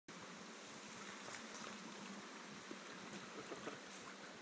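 Shallow river flowing: a steady, faint rush of moving water.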